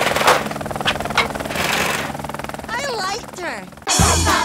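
Rapid jackhammer-like rattling, a cartoon sound effect of something tunnelling fast through a wooden floor. There are two sharp knocks in the first second and a voice crying out near the end.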